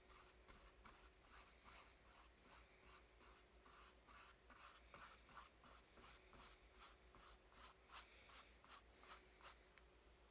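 Faint paintbrush strokes scrubbing on the painting surface in a steady run of short dabs, about three a second.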